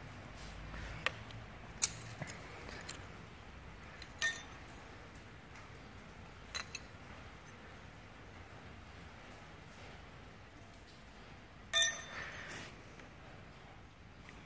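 Scattered light metallic clinks and taps as a worn big-end bearing shell and the crankshaft of a Petter PAZ1 diesel are handled on a concrete floor, with a quick run of clinks near the end.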